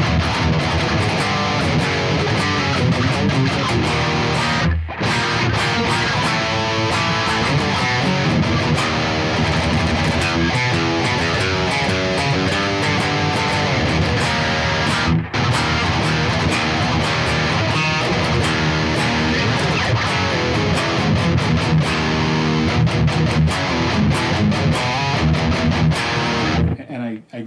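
Electric guitar riffing on a high-gain amp tone: a 2007 Gibson Flying V played through a Bogren AmpKnob RevC amp sim, with Neural DSP Mesa cab simulation, delay and reverb. The playing is continuous and stops briefly twice, about five seconds in and about fifteen seconds in.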